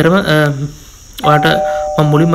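A doorbell-like two-note chime sound effect begins about a second in and holds as a steady tone under a man's voice.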